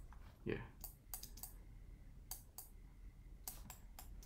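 A few faint, scattered clicks from a computer mouse and keyboard, several coming in quick pairs, as values are edited on the computer.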